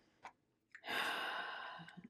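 A woman's sigh: one breathy exhale of about a second, starting near the middle, preceded by a couple of faint clicks.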